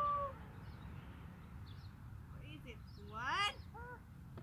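A young child's voice: a short, rising wordless call about three seconds in, followed by a couple of faint shorter ones, over a steady low outdoor rumble.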